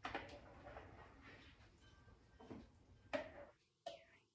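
Near silence with a few faint, brief taps and clicks from hands working at the kitchen counter.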